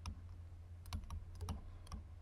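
Faint, scattered clicks of a stylus on a pen tablet during handwriting: one at the start, a small cluster about a second in and a couple near the end, over a low steady hum.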